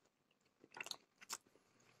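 Faint chewing of a bite of breaded meat cutlet, with a few soft crunches about a second in.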